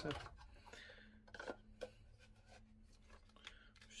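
Hunting knife being slid into a snug tooled-leather sheath: faint leather-on-leather rubbing, with two light clicks about a second and a half in.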